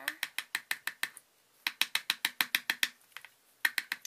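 Red plastic measuring spoon tapping rapidly against a small plastic container of glitter, knocking the glitter out of the spoon. The taps come as sharp clicks about seven a second, in two quick runs with a short pause between, and a couple more near the end.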